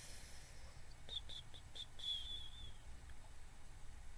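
A bird chirping faintly: a few short high notes about a second in, then one longer, slightly falling note.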